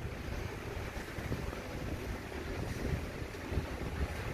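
Low, uneven rumbling noise with no speech or music.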